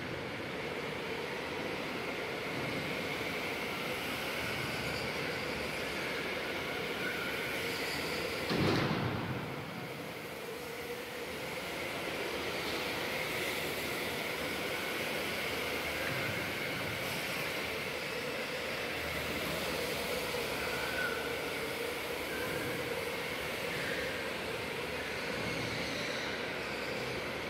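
Electric go-karts running laps on an indoor concrete track: a steady whine of motors and tyres, echoing in the hall. A brief louder swell about a third of the way in as one kart passes close.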